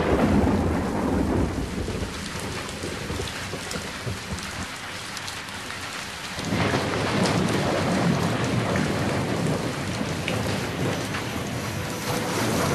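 Steady rain with rolling thunder. A loud rumble at the start fades into the hiss of the rain, and another long rumble builds about six seconds in.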